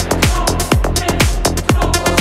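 Melodic techno playing from a DJ mix: a steady four-on-the-floor kick drum about twice a second, each kick dropping in pitch, with hi-hats ticking between the kicks.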